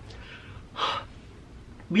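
A man's single short, audible breath about a second in, during a pause between sentences.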